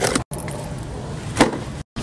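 Plastic packaging of a bag of marinated bangus (milkfish) rustling and crinkling as it is handled, with one sharp crinkle about one and a half seconds in. The sound cuts out briefly near the start and near the end.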